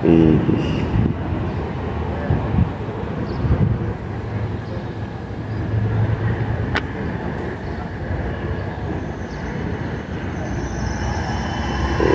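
Outdoor street ambience: a steady rumble of vehicle and traffic noise with a sharp click about two-thirds of the way through.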